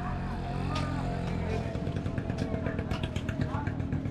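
A motorcycle engine running close by, steady at first, then revving unevenly from about a second and a half in. Background voices and a run of light clicks and rustles over the second half.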